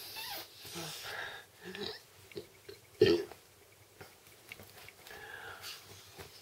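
Vinyl air mat being blown up by mouth: breathy puffs and draws at the valve, with soft scattered noises of the vinyl shifting and one sharp thump about three seconds in.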